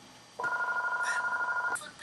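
An electronic trilling ring like a telephone's, a steady fast warble that starts just under half a second in and stops after about a second and a half.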